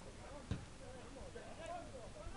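Distant shouting voices carrying across an open football pitch, with a single sharp thump about a quarter of the way in.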